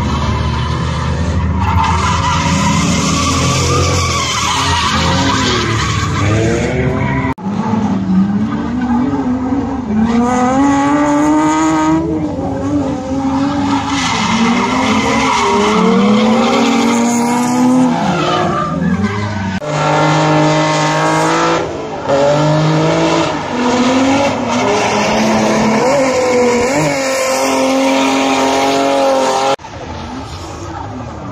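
Drift cars sliding on the skid pad: engines revving up and down in pitch as the throttle is worked, with tyres squealing and skidding. The sound changes abruptly a few times.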